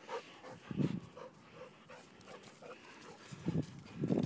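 A dog making a string of short, soft sounds close by, with a dull thump about a second in and another near the end.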